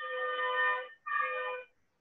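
Two steady buzzing electronic tones, the first about a second long and the second about half a second, with a short gap between them.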